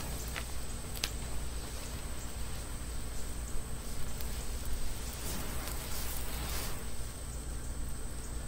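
Blackmatch fuse (cotton string soaked in black powder) burning slowly on the ground: a steady hiss with a few sharp crackles in the first second, denser around the middle of the burn.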